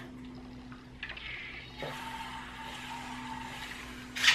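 A person drinking water from a plastic shaker bottle: faint swallowing and liquid sounds, with a soft click about a second in, over a steady low hum.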